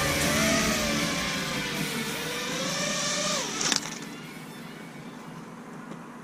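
Quadcopter's electric motors whirring at low speed with a wavering pitch, then winding down and stopping about three and a half seconds in, followed by a sharp click; faint wind noise after.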